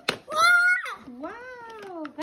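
Two drawn-out vocal exclamations, a short high 'ooh' about half a second in, then a longer one that rises and falls in pitch.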